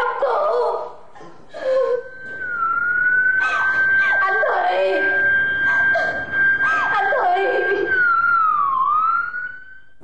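Ambulance siren: a steady high tone starting about two seconds in, dipping briefly at first and gliding down and back up near the end.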